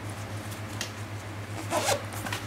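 Zipper on a small fabric crossbody bag being run along its track: a faint short zip just before a second in, then a louder, longer zip near the end.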